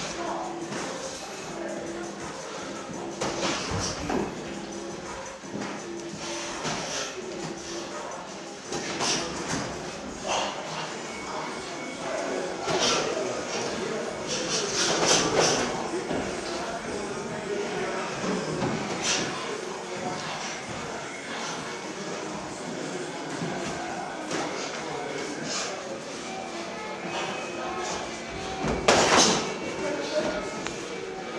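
Boxing gloves landing in sparring, sharp slaps now and then, loudest about halfway and near the end. Voices and some music sound in a large, echoing gym hall behind them.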